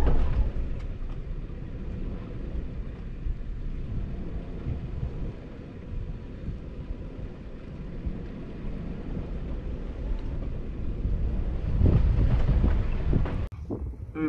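Low, noisy rumble of an off-road vehicle crawling over slickrock, mixed with wind buffeting the microphone; it swells louder near the end.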